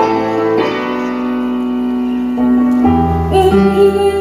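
Live band music with sustained piano chords that change every second or two. A deep bass note comes in about three seconds in, and a woman's singing voice enters near the end.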